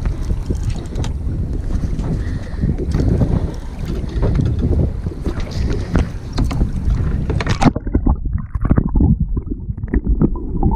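Wind buffeting the microphone over choppy water from a boat, with uneven knocks and water slaps. About eight seconds in, the sound suddenly turns muffled and low, with underwater gurgling and rumbling.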